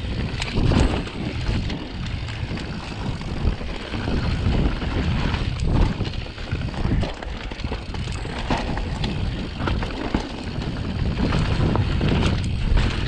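Mountain bike riding fast down a dirt woodland trail, with wind rushing over the microphone and the tyres rolling over dirt and roots. Frequent short clicks and knocks come from the bike as it crosses bumps.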